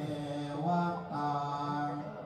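Low male voices chanting together in long held notes, a Buddhist mantra-style chant: two sustained phrases with a short break about a second in.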